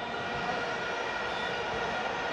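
Steady stadium crowd din with the sustained drone of vuvuzelas (plastic stadium horns), several horn tones held level without a break.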